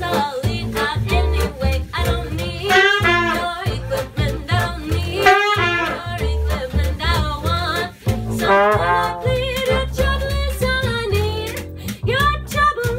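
Acoustic jazz band playing live: a woman singing over trumpet, trombone, saxophone, guitar, accordion and plucked upright bass, with brushes on a suitcase keeping a steady beat.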